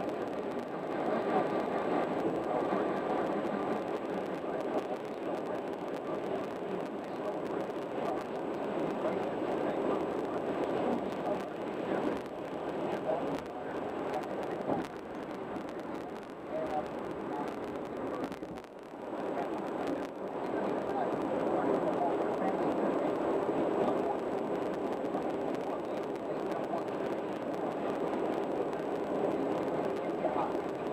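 Steady road and tyre noise from a car cruising at highway speed, dipping briefly about two-thirds of the way through. An indistinct murmur like muffled voices rides along with it.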